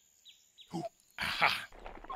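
A cartoon leopard character's voice straining with effort: a short "ooh" and a loud grunt about a second in, after a quiet start.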